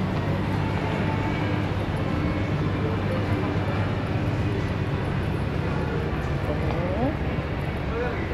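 Shopping-mall interior ambience: a steady low hum with faint distant voices in the background.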